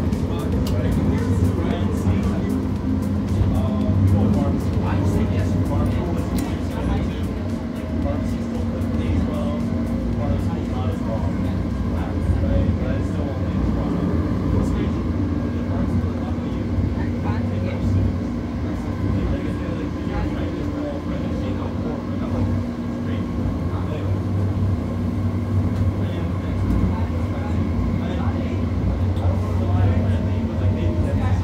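Interior running noise of an Ottawa O-Train Confederation Line light rail car (Alstom Citadis Spirit) in motion: a steady low rumble that holds at an even level throughout.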